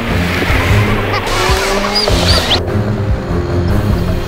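A car driving on the road, its engine and tyre noise mixed with background music.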